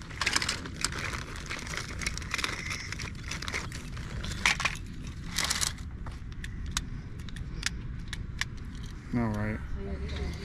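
Small plastic toys clattering and rustling as hands rummage through a wicker basket, with many quick light clicks, thinning out to occasional clicks after about six seconds. A short voice comes near the end.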